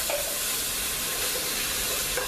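Blended sofrito sizzling steadily in hot oil in a stainless steel pot as it is stirred.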